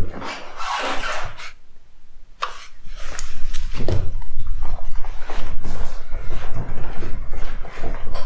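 Rustling and a few sharp light knocks over a loud, continuous low rumble that sets in about two and a half seconds in.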